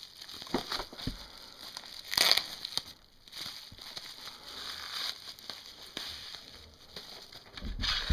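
Bubble wrap crinkling and rustling as a knife is unwrapped from it and its cardboard slip, with a louder rustle about two seconds in.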